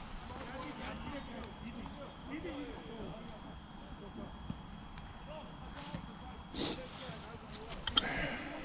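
Faint distant voices over low outdoor background noise, with a thin steady high tone throughout. A brief rustling burst comes about six and a half seconds in, and there are a few small clicks near the end.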